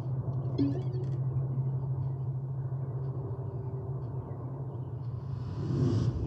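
A steady low hum from the music video's opening, with a few faint clicks about a second in. Music starts to swell in at the very end.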